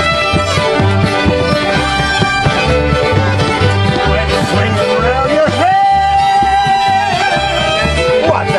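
Live old-time string band jam: several fiddles and a five-string banjo playing a lively tune together over a steady low beat, with one long held note a little past the middle.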